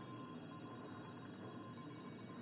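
Faint, steady background hiss with a thin, steady high tone running through it, and no distinct events.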